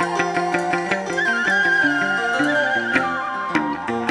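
Chầu văn instrumental music from a Vietnamese traditional ensemble. A plucked melody steps from note to note over regular sharp percussion strikes, and a high wavering melodic line is held for about two seconds in the middle.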